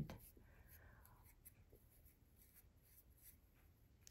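Near silence, with faint rustling and light ticks from fine cotton thread being worked with a metal crochet hook.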